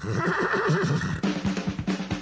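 A horse whinny sound effect, wavering up and down, over the start of upbeat music; a drum beat comes in about a second in.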